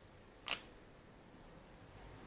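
A single sharp click about half a second in, over faint room tone.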